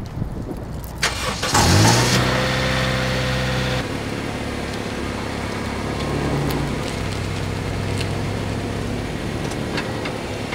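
A Honda CR-V's four-cylinder engine starting. A click comes about a second in, then the engine catches with a short rising rev and settles into a steady idle. Near the middle it drops to a quieter, steady running note as the car pulls away.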